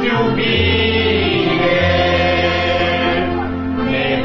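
A church congregation singing a hymn together in long held notes, over steady keyboard-style bass notes that change every second or so.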